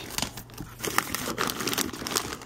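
Packaging crinkling and rustling as a cardboard shipping box of dog goodies is rummaged through, in irregular crackles.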